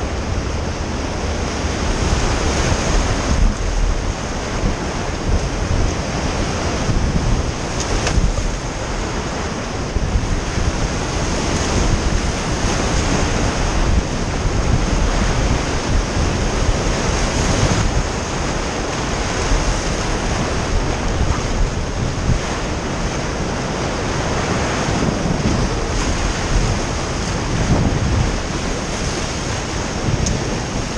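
Whitewater rapids rushing steadily around a raft running through them.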